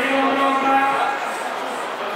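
A man speaking into a microphone, drawing out one long vowel on a steady pitch for about a second before his speech goes on.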